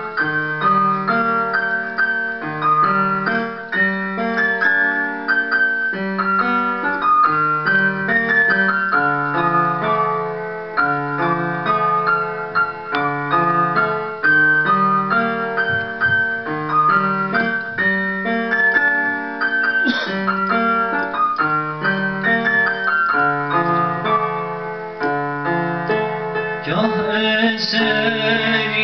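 Hohner electronic keyboard playing an instrumental passage in a piano voice: a steady, repeating bass figure under a right-hand melody. Near the end a singer's voice comes in over the keyboard.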